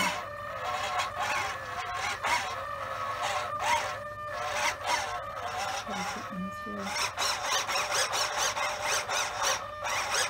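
Elevator servo of a rotary drive system whining as it drives the elevator back and forth, its pitch rising and falling with each stroke. The strokes come quicker and choppier in the last few seconds.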